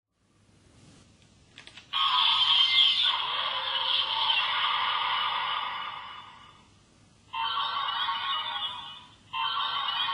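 DX Ultra Z Riser transformation toy playing electronic music and sound effects through its small speaker, sounding thin with no bass. It runs in three stretches: from about two seconds in after a couple of light clicks, fading out shortly before a short break, resuming briefly, and starting again just before the end.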